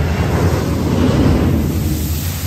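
Water spray from a ride's splashdown rushing and spattering over the splash-zone wall, a loud, steady rush that swells to its loudest about a second in.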